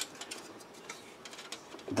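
Light clicks and rattles of plastic model kit parts being handled: one sharper click at the start, then a run of faint, irregular ticks as a plastic sprue frame is picked up.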